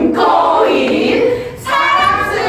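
A group of women singing a hand-play song together, with a short break about one and a half seconds in.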